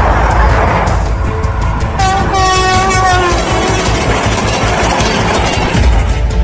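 Vande Bharat Express electric trainset passing at speed close by: a loud, steady rush of wheels and air. About two seconds in its horn sounds for just over a second, dipping in pitch as it ends.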